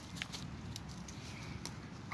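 Dry twigs being handled and arranged by hand over paper as campfire kindling: a few faint sharp snaps and clicks over a low, steady rumble.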